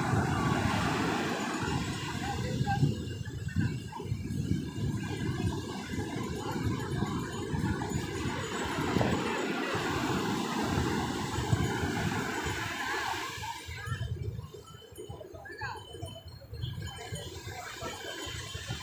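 Sea waves breaking and washing up on a sandy beach, heard through wind rumbling on the microphone; the sound drops away for a few seconds near the end.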